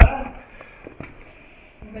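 Speech breaks off with a sharp knock, followed by a low, steady background with a few faint clicks; voices start again near the end.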